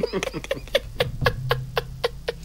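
A man laughing in quick, clipped bursts, about six or seven a second, that slow slightly toward the end.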